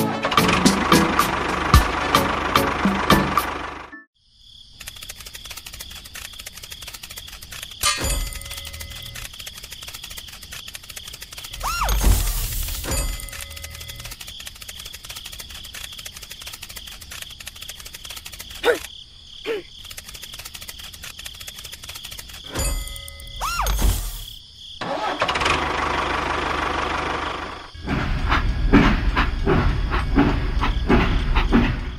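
Background music at the start and end. In between, a small electric toy motor whines steadily for about twenty seconds, with a few knocks and clicks.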